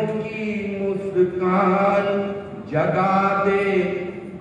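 A man singing lines of a Hindi poem in long, drawn-out melodic phrases, in the sung style of a poetry recital. One phrase ends about two and a half seconds in and the next begins right after.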